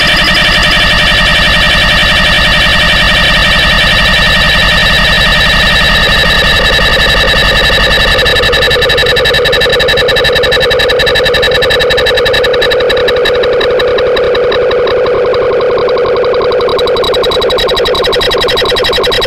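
Loud electronic drone of many sustained tones stacked together, with a fast fluttering pulse running through it. A lower tone swells up partway through, and the highest tones fade near the end.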